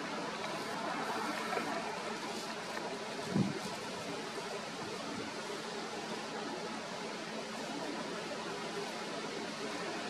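Steady even background hiss with no clear source, and one brief low thump about three and a half seconds in.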